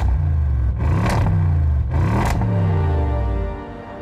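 Audi RS6 Avant's twin-turbo V8 revved twice at the exhaust, climbing in pitch to a peak and falling back each time, then dying away.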